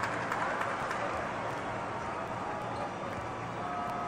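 Indoor basketball gym ambience during a stoppage in play: a steady hall hum with faint, indistinct voices from the court and bench, and a brief faint steady tone near the end.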